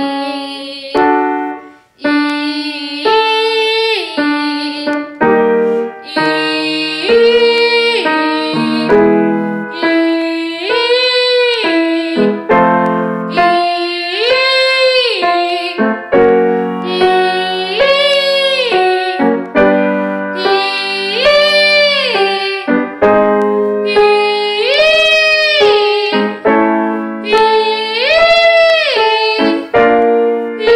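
A young girl singing a vocal warm-up exercise in chest or mixed voice, without switching to head voice. Each short phrase rises and falls in pitch, one about every two seconds, and a grand piano plays a chord under each phrase.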